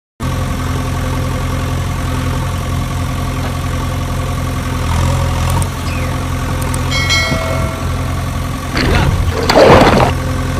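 Engine idling sound, a steady low drone that starts suddenly just after the start. A louder burst of noise comes near the end.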